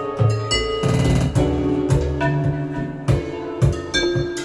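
Live band music: a Nord electric keyboard playing sustained chords and a melody over a steady drum beat.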